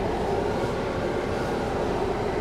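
Steady hiss of a Ford Bronco's air conditioning blowing in the cabin, over the low hum of the engine idling.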